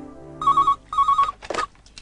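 Telephone ringing in the British double-ring pattern: two short trilling rings about half a second apart, followed by a brief noise.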